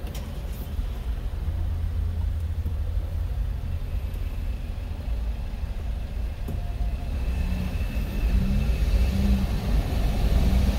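Low rumble of a car's engine and tyres heard from inside the cabin while creeping along in queued traffic, getting louder near the end as the car picks up speed.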